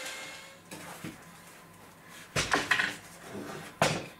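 A power drill's motor runs briefly and fades out, then a few knocks, a clattering cluster of knocks about halfway through and a sharp knock near the end as the drill is put down and the plywood board is handled.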